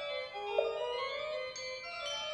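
Organ holding sustained, overlapping tones, with a struck tuned-percussion note about half a second in and a high tone entering near the end.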